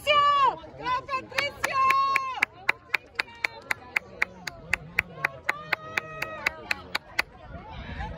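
Rapid, steady hand clapping, about four claps a second, starting about a second and a half in and stopping near the end, with long drawn-out shouts of encouragement over it.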